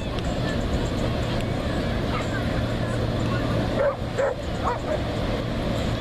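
Dogs barking a few times about four seconds in, over the steady wash of ocean surf.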